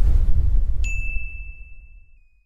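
Subscribe-button sound effect: a low rumble fading out, and a bell-like notification ding a little under a second in, ringing as one steady high tone for about a second.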